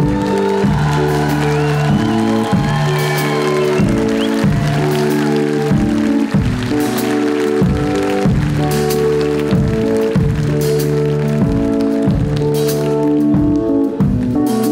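Live band music: an instrumental intro with a steady repeating pattern of low bass notes and chords. Audience applause and cheering ring over it during the first few seconds, then fade.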